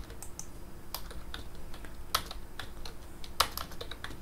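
Typing on a computer keyboard: irregular key clicks, with a few louder keystrokes among them.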